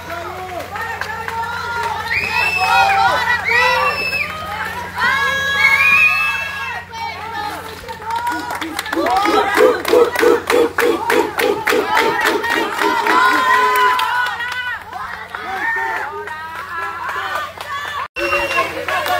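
A group of young people shouting and cheering excitedly, many high voices overlapping. For several seconds in the middle come fast, regular claps with rhythmic chanting.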